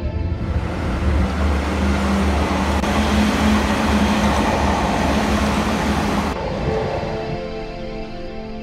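Electric passenger train passing close by: a loud, steady rush of wheel and rolling noise with a low hum, which cuts off abruptly about six seconds in. Music plays underneath.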